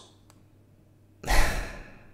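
A person sighs once, a breathy exhale about a second in that fades away.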